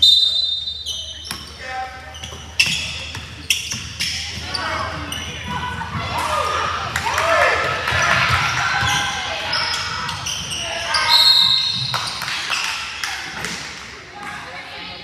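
Basketball game in an echoing gym: the ball bouncing on the hardwood floor with repeated sharp knocks, players and spectators calling out, and a referee's whistle sounding right at the start and again about eleven seconds in.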